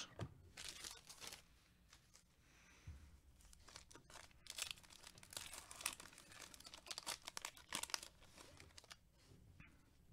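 A foil trading-card pack, a 2020 Panini Contenders Football hobby pack, being torn open and its wrapper crinkled by gloved hands: faint, irregular crackles and short rips.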